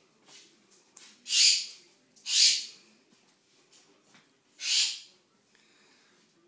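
Pet bird hollering three times: loud, harsh, hissy calls about half a second each, the last one after a gap of about two seconds.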